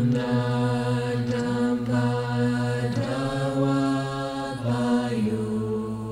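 A mantra chanted by low voices on long held notes in Tibetan Buddhist style, the phrases breaking briefly about every two seconds.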